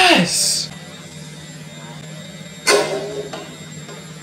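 Steady hum of a ceiling fan running, with an excited shout right at the start and another short exclamation about three seconds in.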